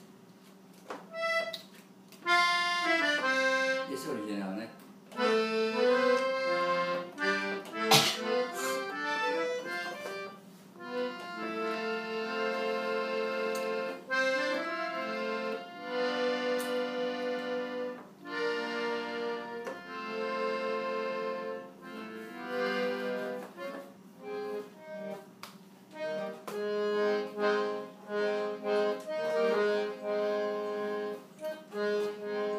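Piano accordion played solo: after a short pause, a melody of short separate notes, then sustained chords over a steady bass line. A sharp click stands out about eight seconds in.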